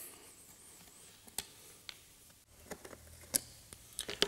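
A few light clicks and taps of small Torx screws and a screwdriver being handled on the plastic housing of an electronic parking brake module, about five in all, the sharpest a little over three seconds in.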